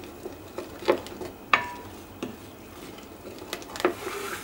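Wooden spoon stirring thin strawberry purée in a glass bowl, a soft wet swishing broken by a few light knocks of the spoon against the glass. One knock, about a second and a half in, rings briefly.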